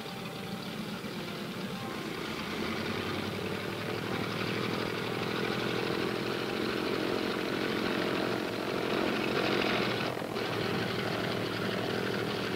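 A Navy blimp's twin propeller engines roar at takeoff power, building up over the first few seconds as the airship lifts off.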